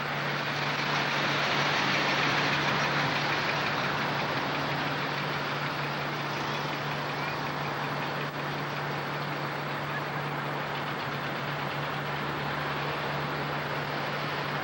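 Steady running noise of a car heard from inside while driving slowly: an even rush with a constant low hum beneath it.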